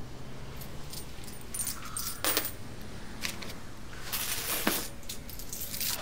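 Loose coins, pennies among them, clinking in scattered small clicks as they are counted out into a cupped hand.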